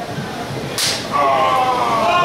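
A single sharp slap of an open-hand strike landing on bare skin, about a second in, followed by a loud, drawn-out shout from a voice.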